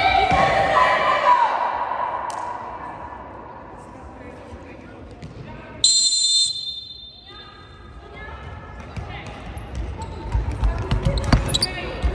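Indoor futsal play echoing in a sports hall: a ball thudding on the court, players' footfalls and shouts. A loud shout rings out at the start, a short referee's whistle sounds about six seconds in, and ball knocks thicken toward the end.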